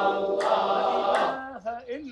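A group of men's voices chanting together in a Sufi dhikr, holding a long note. About a second and a half in, the group fades to a single voice whose pitch wavers.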